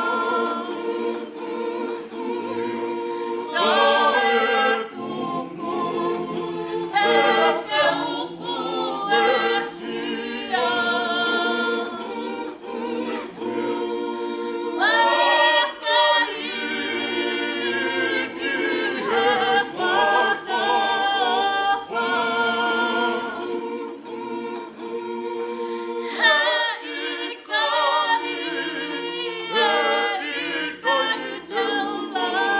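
A congregation of men and women singing together unaccompanied: held chords from many voices, phrase after phrase with short breaks between them.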